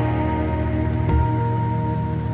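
Background music: a slow ambient piece of long held chords over a steady low bass, with a soft low pulse about a second in.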